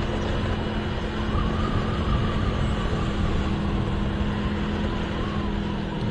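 Motorcycle riding along at a steady speed: an even engine hum under road and wind noise.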